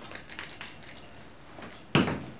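Light metallic jingling in a few short shakes, with a sharp knock near the end.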